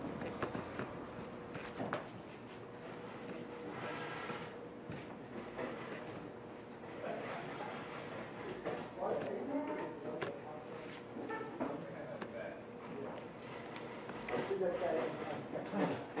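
Faint, indistinct voices in a room, over a faint steady hum.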